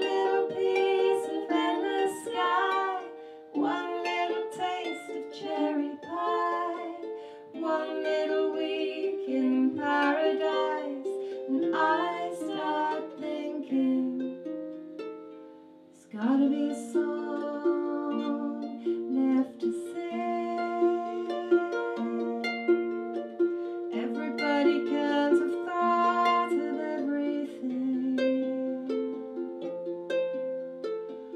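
Lever harp plucked in a slow instrumental folk passage, with long held lower notes sounding under the picked strings. The music thins almost to nothing about sixteen seconds in, then picks up again.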